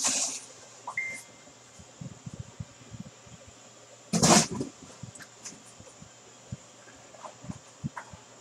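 Cardboard box being opened and handled: the lid and flaps scraping and rustling, with light handling clicks and one loud rustle about four seconds in.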